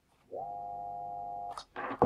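Small capacitor-run AC motor starting on 220 V mains: its hum climbs in a fraction of a second to a steady pitch and holds for about a second before cutting off, followed by a brief scrape. With the leads to the capacitor swapped, it is now turning the opposite way.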